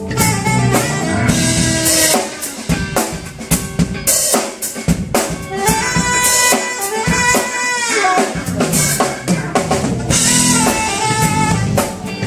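Live instrumental smooth-jazz band: a saxophone plays a melody line with bends in pitch over a drum kit and an electric guitar.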